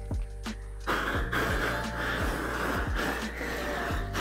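Flame King long-handled propane torch burning with a steady rushing roar, which comes in about a second in, under background music.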